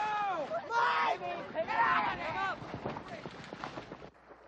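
Several young people shouting and screaming in alarm, their voices overlapping and wordless. The cries rise and fall, are loudest in the first two seconds and fade toward the end.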